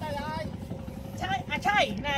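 People talking over the steady low rumble of an idling boat engine.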